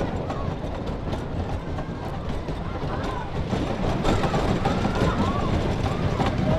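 On-board sound of the Viper wooden roller coaster's train rolling along its wooden track near the lift hill: a steady rumble with rattling from the wheels and cars. Faint voices can be heard behind it.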